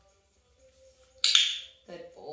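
Dog-training clicker clicked once, a sharp loud click with a brief ring, marking the moment the puppy's rear touches the floor in a sit.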